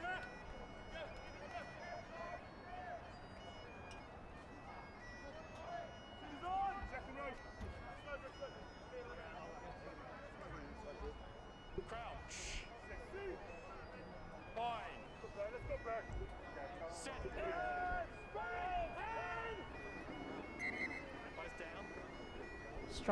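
Faint on-field sound of a rugby scrum forming: scattered shouts and calls from the players and referee, over a steady droning tone, with a couple of short sharp clicks.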